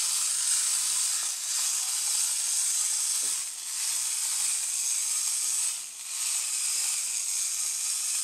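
Wound clockwork mechanism of a walking toy bear running, a steady high whirring hiss with a few brief dips about two seconds apart.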